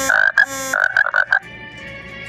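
Phone text-message alert: a quick run of about six short, high chirping pulses, over in about a second and a half.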